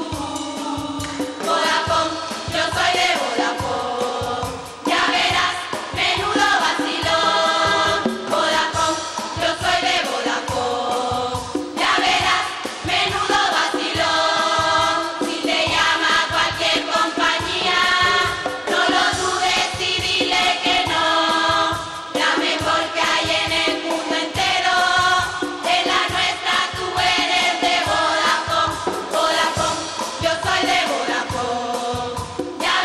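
Canarian carnival murga chorus singing a song together into stage microphones, over a steady, even percussion beat.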